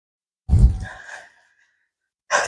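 A single short, breathy rush of air starting suddenly about half a second in and fading out within a second.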